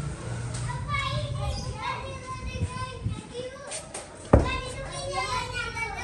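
High-pitched children's voices talking and calling out, with a single sharp knock about four seconds in.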